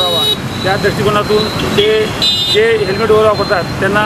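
A man talking in a steady flow, with road traffic running in the background.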